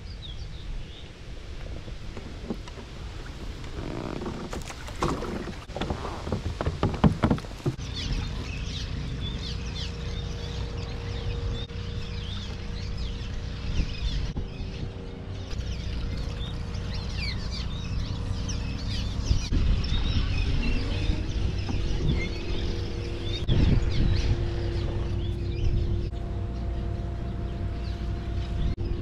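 A flock of birds calling over the water, many short high chirps overlapping, over a steady low rumble. A few knocks and clatters come about four to seven seconds in, before the calling starts.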